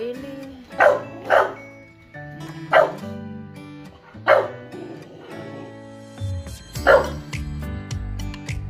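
A dog barking, about five sharp barks at irregular intervals, over steady background music.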